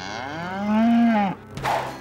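A cow mooing once: one long call that rises and then falls in pitch, lasting over a second. A brief rush of noise follows near the end.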